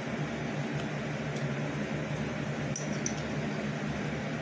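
A fan-driven room appliance running with a steady hum and even hiss. A couple of faint clicks come about one and a half and three seconds in.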